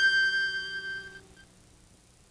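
Intro music ending on a single bright bell-like chime that strikes at once and rings out, fading away within about a second.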